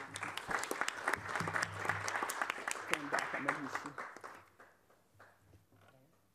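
Audience applauding: dense clapping that dies away about four to five seconds in.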